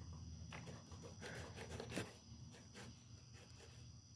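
Faint scattered clicks and scrapes of a string trimmer's gearbox being handled and fitted onto the end of its drive shaft tube, over a low steady hum.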